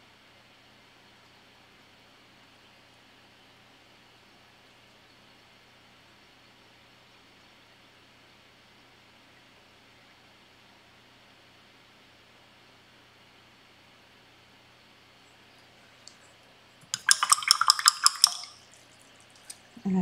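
Faint steady hiss, then near the end a brief, loud run of rapid clinks and splashes: a paintbrush swished and knocked against the sides of a water cup as it is rinsed.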